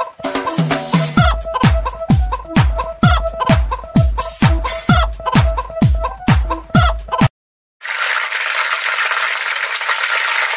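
Hen clucking set to a music track with a heavy bass kick about twice a second, stopping abruptly about seven seconds in. After a brief silence, a steady hiss runs until just before the end.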